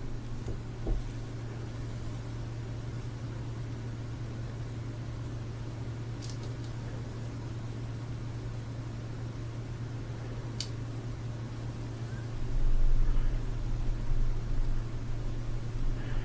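A steady low hum with faint background hiss, broken by a few faint clicks and a soft low rumble about twelve seconds in.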